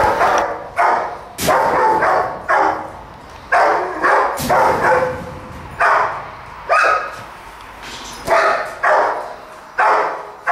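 A dog barking over and over, about a dozen sharp barks at an uneven pace, each fading away within about half a second.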